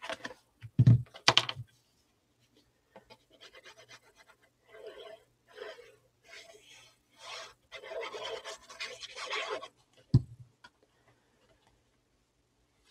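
Paper and cardstock sheets handled on a craft table: intermittent dry rustling and sliding of paper against paper and the cutting mat, with a single sharp thump just after ten seconds.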